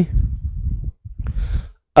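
A man breathing out, a low, noisy exhale lasting about a second, then a shorter, hissier breath about a second in.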